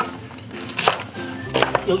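Background music with a few knocks of a kitchen knife cutting through an onion onto a wooden cutting board, about a second in and again near the end.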